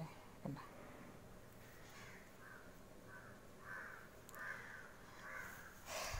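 A crow cawing faintly over and over, a run of short caws starting about two seconds in.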